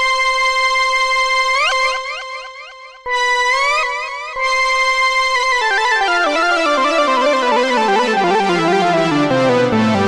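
iTuttle software synthesizer on an iPad playing its 'Super Lead' preset. A bright held lead note starts pulsing about four times a second and fades. A higher note pulses, then a run of notes descends steadily from the treble down into the bass.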